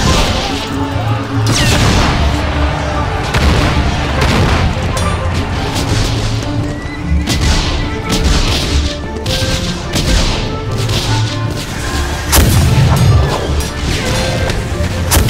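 Musket shots in a battle, sharp cracks every second or so with no steady rhythm, heard over background music.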